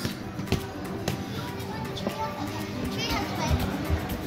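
Children playing and calling out over steady background music in an indoor play centre, with a child's high shout about three seconds in and a few light knocks.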